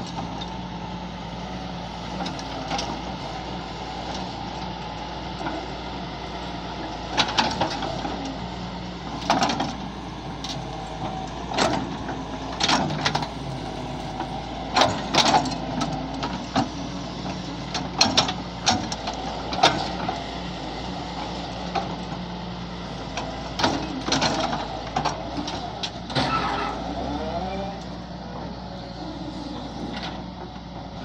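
Doosan DX140 wheeled excavator's diesel engine running steadily under load as the bucket scrapes and levels soil. Irregular sharp knocks and clanks come through the middle stretch of the scraping.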